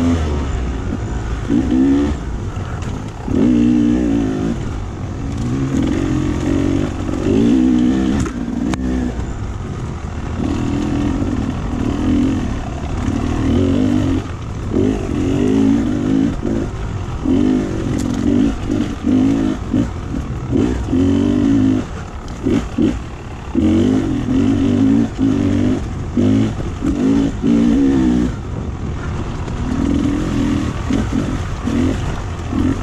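Dirt bike engine heard from on the bike, revving up and down in repeated short bursts of throttle with brief let-offs between them. Sharp knocks from the bike over rough, rocky ground come in the middle stretch.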